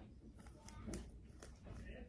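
Faint crunching and a few sharp clicks from a hand-twisted metal herb grinder grinding cannabis.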